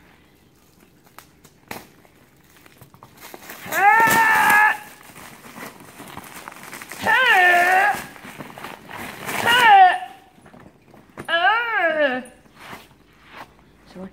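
A boy's voice singing four drawn-out wordless notes, each about a second long and gliding in pitch, with faint crinkling of plastic parcel wrapping between them.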